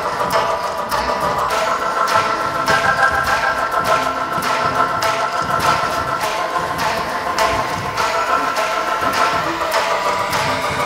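Background music: sustained held chords over a quick, regular percussive beat.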